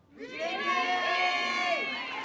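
A group of teenagers shouting a cheer in unison on cue, one held shout lasting about a second and a half, with crowd cheering around it.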